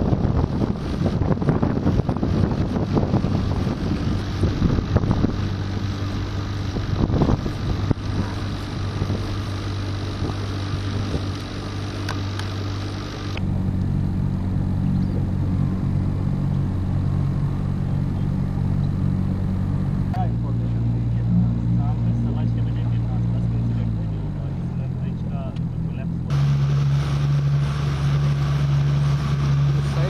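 Boat engine running with a steady low hum, its pitch stepping abruptly to new levels several times.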